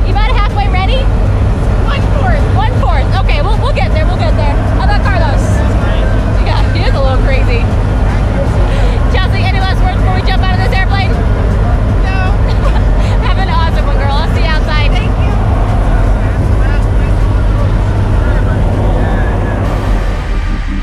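Loud, steady drone of a skydiving jump plane's engines and propellers heard inside the cabin. People's voices talk and call out over it now and then.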